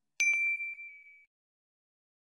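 Notification-bell sound effect from a subscribe-button animation: two quick clicks and a single high ding that rings out and fades over about a second.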